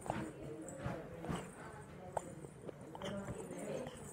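Irregular sharp clicks and knocks close to the microphone, mixed with a baby's short vocal sounds, one of them about three seconds in.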